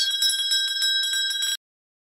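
Bell sound effect: a small bell ringing rapidly with a steady metallic ring, cutting off suddenly about one and a half seconds in.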